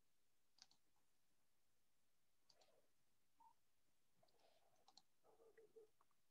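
Near silence with a few faint, sparse clicks from a computer mouse.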